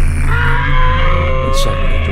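A man's voice holding a long, drawn-out wail, breaking briefly just after the start and then held again for about two seconds, over a steady low hum.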